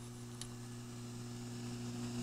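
Cooling fan of a Pride DX 300 tube linear amplifier running, a faint, steady low hum.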